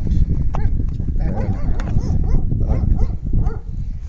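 Farm animals calling several times over a steady low rumble.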